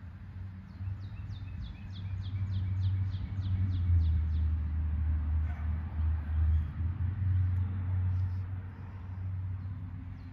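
Wind buffeting the microphone: a low rumble that swells after the first second and eases near the end. Over it, for the first four seconds or so, a bird repeats a short, high, falling note about three times a second.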